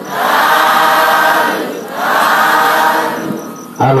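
A congregation of many voices chanting in unison: two long drawn-out group calls, each fading away. Near the end a single low male voice begins chanting.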